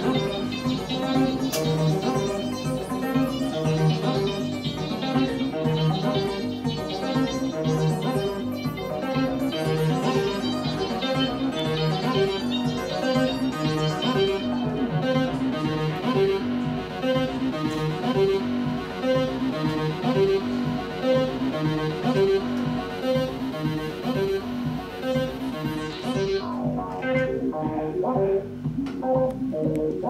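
Modular synthesizer playing electronic music: a fast, repeating sequence of short pitched notes over a pulsing low bass line. Near the end the bright upper part drops out, leaving a sparser, lower pattern.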